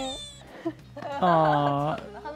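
A young woman's brief spoken "yeah" at the start, then a drawn-out, whiny "hiing" (히잉), a playful whimper held for most of a second near the end.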